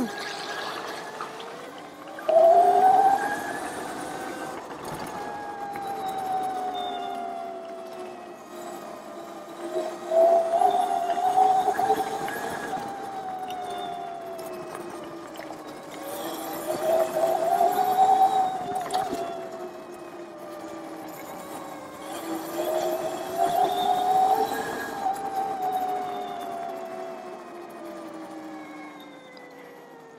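Oset 24R electric trials bike's motor whining, its pitch climbing as the rider accelerates and sinking as he eases off, in about four surges, over a steady rush of tyre and wind noise.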